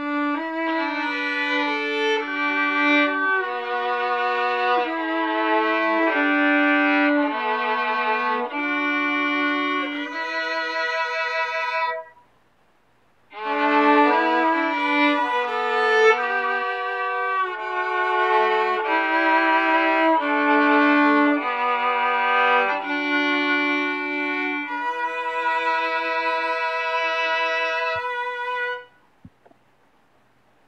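Solo violin playing a slow melody of held, bowed notes in two phrases, with a break of about a second after the first. The notes waver with vibrato, and the last one is held long before the playing stops shortly before the end.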